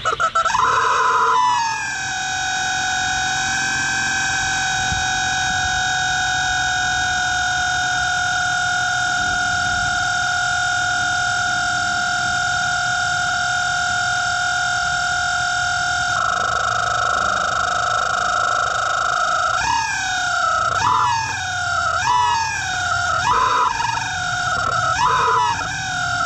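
Exhaust whistles fitted in the tailpipes of a Ford Mustang EcoBoost, shrieking as the engine starts. The whistle jumps high at first and then settles into a steady, loud two-note whistle at idle. Near the end, a run of quick throttle blips makes the whistle swoop up and back down in pitch about once a second.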